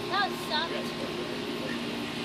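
Two short, high-pitched yelps from a child's voice in quick succession, over a steady low hum.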